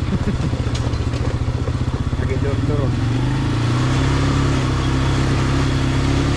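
ATV engine running as the quad rides along a gravel dirt road; about three seconds in, the engine note rises and evens out as it picks up speed.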